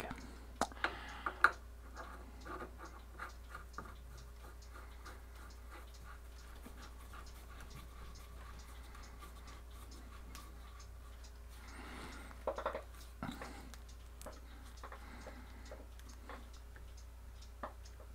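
Scattered faint clicks and taps of a metal pipe cap being handled and screwed hand-tight onto a threaded fitting, with a sharper click about a second in and a brief cluster of scraping around twelve seconds in. A low steady hum runs underneath.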